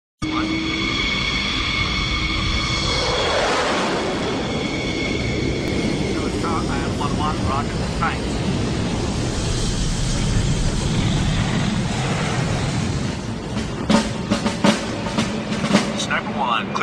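Fighter jet engines running: a steady high whine with several tones for the first few seconds, then a broad, heavy rumble. Sharp clicks and crackles come in near the end.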